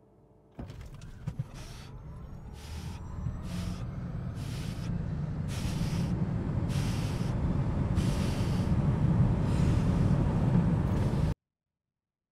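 Cabin noise inside a Tesla Model S Plaid on a full-throttle quarter-mile drag run: road and wind roar start suddenly and build steadily as the car accelerates to about 150 mph. A faint rising electric-motor whine comes at the start, and pulses of hiss about once a second. It cuts off suddenly near the end.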